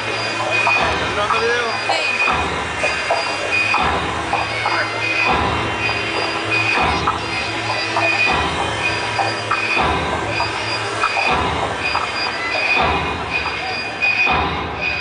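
Loud amplified live music heard from within a concert audience. A low pulse comes and goes roughly every second and a half, and high whistling tones recur over a dense, distorted wash of sound.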